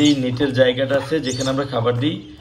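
A man talking.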